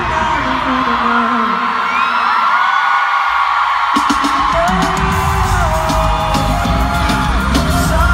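Loud live pop music at an arena concert, with a singing voice and a screaming crowd. The bass and beat drop out for about three seconds, then come back in about four seconds in with a pounding beat and sharp percussion.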